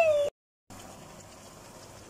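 A woman's drawn-out falling voice, cut off abruptly just after the start, then a brief dead silence, then a pan of paksiw na pata simmering with a steady soft bubbling hiss.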